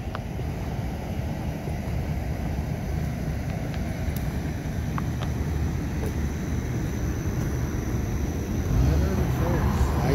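Low, steady outdoor rumble with a few faint clicks, heard while walking with a hand-held phone; a man's voice begins near the end.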